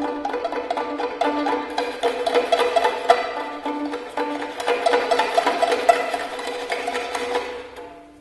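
Prepared, amplified violin playing a dense run of short, rapid notes over a steady held tone. It dies away just before the end.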